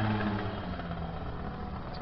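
Tuned two-stroke scooter engines running as the scooters ride away down the street, their sound steady and slowly fading with distance.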